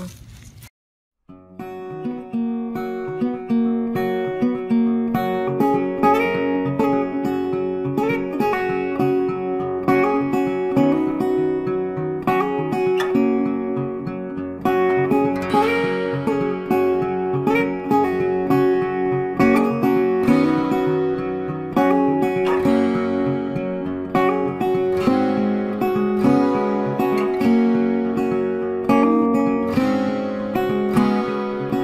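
Background music of acoustic guitar, plucked notes played continuously, starting about a second and a half in after a brief silence.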